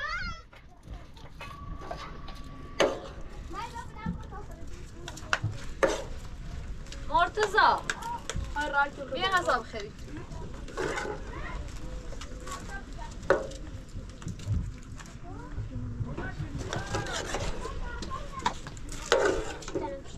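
Scattered voices and short murmurs of a family eating together, with occasional sharp clicks and clinks of plates, bowls and spoons.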